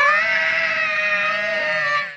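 An animated character's long, high-pitched scream, rising quickly at the start and then held at one steady pitch.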